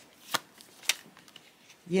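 Deck of picture cards being shuffled in the hands: two sharp card snaps about half a second apart, with a few fainter ticks between.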